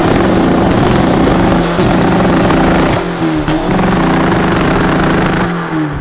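Heavily tuned VW Golf 1.9 TDI four-cylinder diesel revved hard while standing and held on its popcorn rev limiter at about 5,300 rpm, giving a rapid stuttering, choppy note. The revs dip briefly a few times and fall away near the end.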